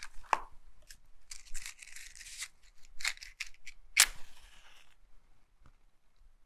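A match being struck to light a candle: scratchy rasping and small clicks, then a sharp strike about four seconds in followed by a brief hiss that dies away within a second.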